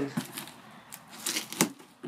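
Knife blade slicing packing tape along a cardboard box seam: a few short scratchy strokes, then one sharp click about one and a half seconds in.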